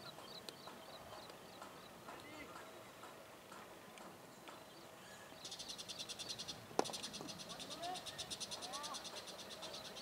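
Cricket bat striking the ball once, a single sharp crack about seven seconds in. Faint bird chirps run underneath, and a fast, high pulsing buzz starts a little before the hit.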